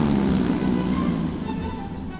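Cartoon fart sound effect: a long buzzy tone that drops in pitch and then holds low with a hissing edge, slowly fading.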